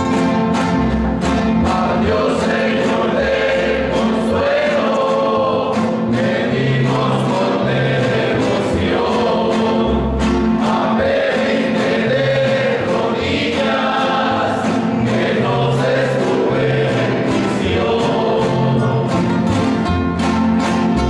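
Several nylon-string classical guitars strumming a steady rhythm while a group of voices sings together.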